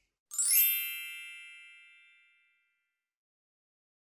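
A bright, magical chime sound effect: a quick downward run of high bell-like notes that then rings and fades away over about two seconds.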